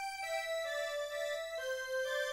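MIDI karaoke backing track of a Thai luk thung song: a synthesized lead melody holds a few notes, stepping down in pitch, with no singing.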